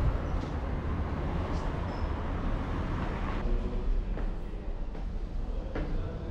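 Steady low rumble of background noise with a few faint short clicks.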